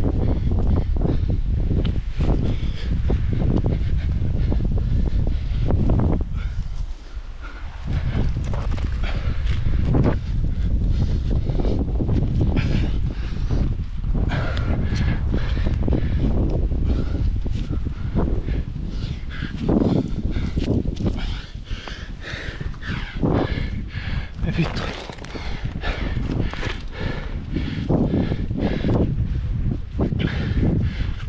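A climber's heavy breathing and grunts of effort while climbing a granite crack, in irregular surges. Wind rumbles on the helmet-mounted microphone underneath.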